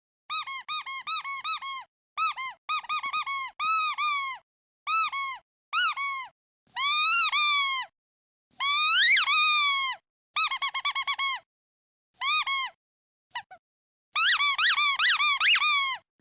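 Rubber duck squeak toy squeezed over and over: quick runs of short, high squeaks in bursts with short silences between. Two longer, drawn-out squeaks come in the middle.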